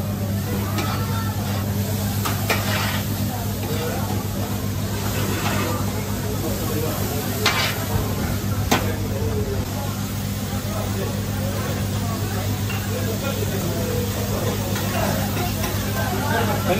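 Meat frying for tantuni on a street-food griddle, sizzling steadily over a low hum, with two sharp utensil clicks about halfway through.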